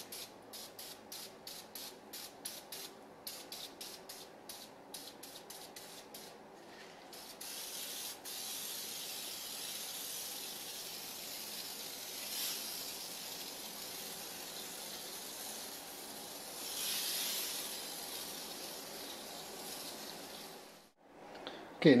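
Aerosol can of Easy-Off oven cleaner spraying onto a stainless steel stovetop. It begins with a rapid run of short bursts for several seconds, then turns to one long continuous hiss that cuts off about a second before the end.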